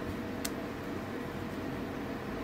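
Steady low room hum and hiss, with one faint small click about half a second in as a brass pin is worked into a wooden pick handle.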